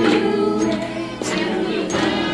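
A group of voices singing along with music, with hand claps in a beat.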